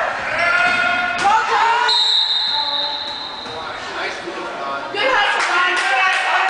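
A referee's whistle blown in one long steady blast of nearly two seconds, starting sharply about two seconds in, stopping play. Spectators' voices and chatter in the gym surround it before and after.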